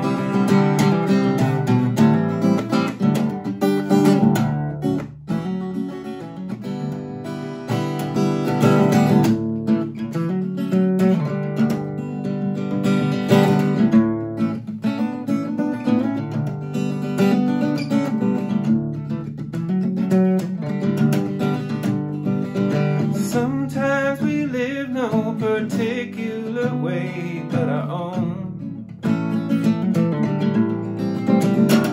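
Acoustic guitar played solo through an instrumental break, strummed and picked continuously.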